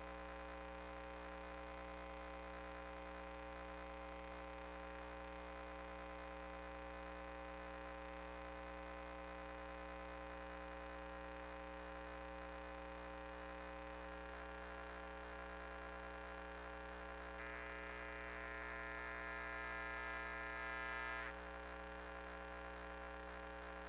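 Faint, steady electrical mains hum from the inspection camera rig's audio line, made of many evenly spaced tones. About three-quarters of the way through, a higher whine joins, grows slightly louder, and cuts off suddenly about a second before the end.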